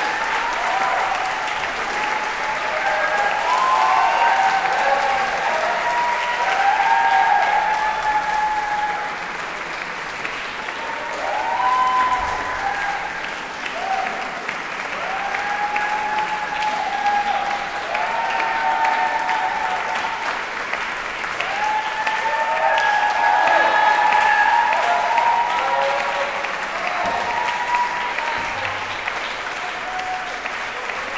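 Sustained audience applause with many voices cheering and calling out over it, swelling and easing in waves.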